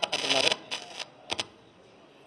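A person's voice for about half a second at the start, then three short sharp clicks and low room tone.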